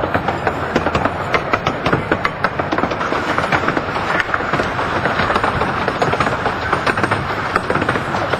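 Fairbourne Railway 12¼-inch gauge train rolling along the track, heard from aboard a carriage: a steady rumble of wheels with many irregular sharp clicks of the wheels over the rail joints.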